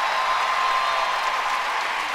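Arena audience applauding steadily, a dense even clatter of many hands, as a skater takes the ice.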